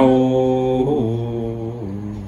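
A man chanting a Sanskrit verse in a slow, melodic recitation. He holds long steady notes, shifting pitch about a second in and again near the end, and his voice slowly grows softer.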